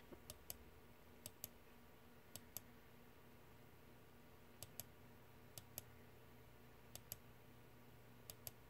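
Faint short clicks in close pairs, about six pairs spread unevenly across the stretch: the press and release of a computer mouse button, each pair stepping an animation forward one frame.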